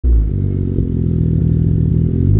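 2008 BMW 535xi wagon's twin-turbo N54 inline-six idling steadily through its custom exhaust, heard close to the tailpipes.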